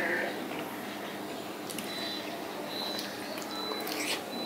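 A man chewing ripe papaya, with a few faint mouth clicks about two seconds in and near the end.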